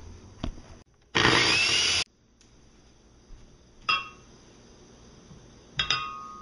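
Hamilton Beach 10-speed blender motor run in one short burst of just under a second, starting and stopping abruptly. Near the end a chiming tone begins.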